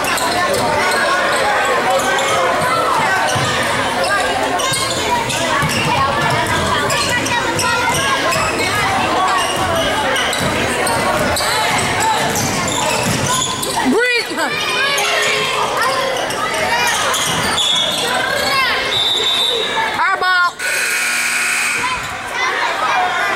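Basketball game sounds in a reverberant gym: a ball dribbling on the hardwood, sneakers squeaking, and players' and spectators' voices throughout. A brief shrill whistle sounds near the end.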